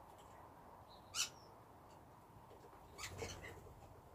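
Feral pigeons at a wooden bird table: one short, sharp sound about a second in, then a brief cluster of sounds around three seconds in, over a faint steady hiss.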